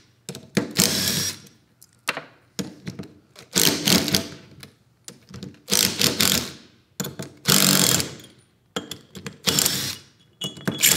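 Cordless impact driver run in about six short bursts, each half a second to a second long, backing out the end-cap bolts of a spring-return rack and pinion pneumatic actuator. The bolts are turned a little at a time, side to side, so the spring pressure comes off the cap evenly.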